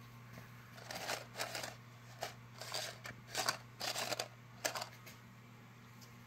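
Faint, irregular rustles and light ticks over a steady low hum.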